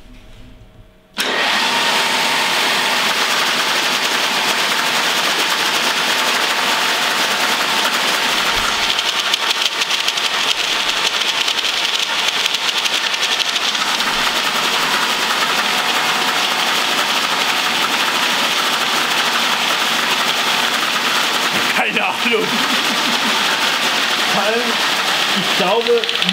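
An old workshop machine's electric motor and gearbox switching on about a second in, then running with a steady whir that drives its flexible shaft.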